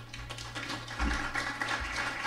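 Audience applauding, a dense patter of clapping that builds just after the thank-you, with two low thumps partway through.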